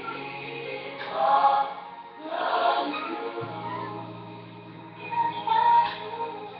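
Music with a choir singing: sung phrases swell and fade over a held low note.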